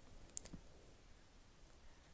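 Near silence with a single short, sharp click about a third of a second in.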